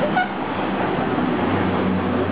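Dense outdoor background noise of voices and traffic. A brief voice sounds at the very start, and a steady low hum comes in about two thirds of the way through.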